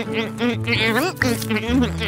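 A high-pitched, wavering cartoon voice making wordless vocal sounds in quick rising and falling glides, over background music.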